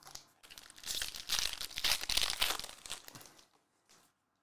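Foil wrapper of a Mosaic basketball trading card pack crinkling as it is torn open, a dense crackle that builds about half a second in, peaks in the middle and dies away near the end.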